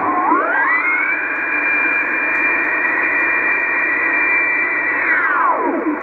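A two-tone digital-mode data signal on the 20-metre band, heard through a Yaesu FT-301 HF transceiver's speaker over receiver hiss. The pair of steady tones glides up in pitch about half a second in, holds, then slides down near the end as the tuning dial is turned across the signal.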